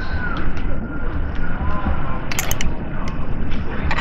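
Spoon and glass-jar clicks with light rustling as marinated beef is spooned onto aluminium foil, a short cluster of sharp clicks about halfway through, over a steady low rumble.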